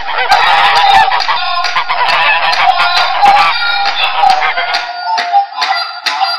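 Battery-operated toy swan's built-in speaker playing recorded goose honks: a dense run of calls, then separate short honks in the last couple of seconds.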